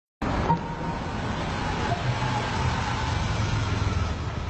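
Steady city street traffic noise, a continuous low rumble of vehicles, with a short sharp sound about half a second in.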